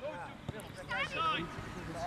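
A voice calling out across an outdoor football pitch, with one short thump about half a second in.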